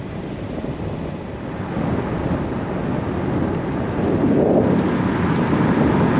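Wind rushing over a camera microphone held out of a car window, louder from about four seconds in, over the low rumble of the car.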